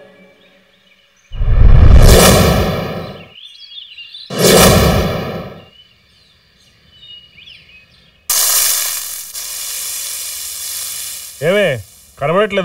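Two loud cinematic whoosh sound effects, the first about a second in and the second about four seconds in, each sweeping through and fading over a second or two. From about eight seconds in a steady hiss of ambient noise begins suddenly.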